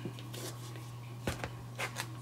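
Clear acrylic stamp on its block pressed onto cardstock and lifted off, giving two short light taps about a second and a half in, over a steady low hum.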